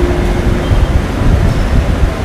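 Low, steady rumble of room noise in a large hall fitted with a public-address system, with a faint steady hum fading out within the first second.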